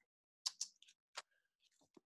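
Near silence broken by a few faint, short clicks, four or so within the first second and a half and one more just before the end.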